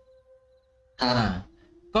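A near-silent pause, then about a second in a man's voice gives a short hesitant 'ah... well' that trails off.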